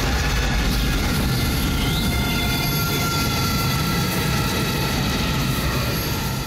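Film soundtrack sound effects: a loud, steady, rumbling roar with faint held tones above it, a storm-like sound-design bed for a horror film.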